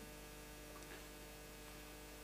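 Near silence with a faint, steady electrical mains hum.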